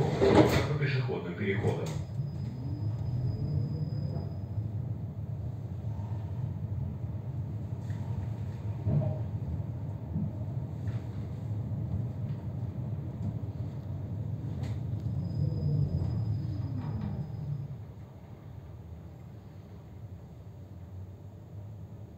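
Moscow tram heard from inside its cabin while running along the track: a steady low rumble of wheels on rail with a few light clicks, and a faint motor whine that rises about two seconds in and falls again around sixteen seconds. The sound drops noticeably quieter after about eighteen seconds as the tram slows.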